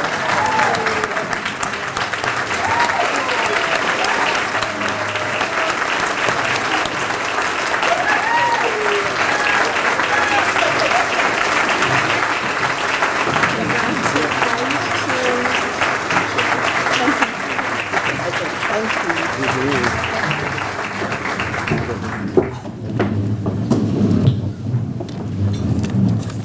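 A room full of people applauding steadily, with scattered voices and calls rising over the clapping. The applause dies away about four seconds before the end.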